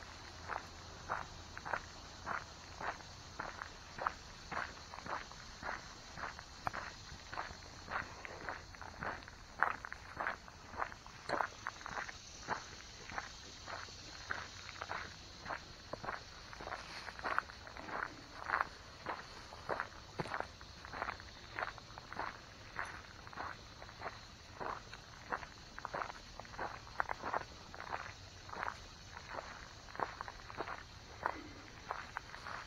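A person's footsteps walking at a steady pace on a gravelly dirt trail, about two steps a second.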